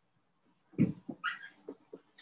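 A pet animal's brief vocal sounds: a short low sound a little under a second in, then a quick higher call that bends in pitch.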